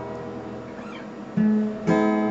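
Acoustic guitar between sung lines: a chord rings and fades, then a new chord is strummed about a second and a half in, with another stroke just after.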